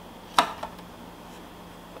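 A single sharp click, followed by a faint tick or two, as the white plastic parts of a food mill attachment are handled.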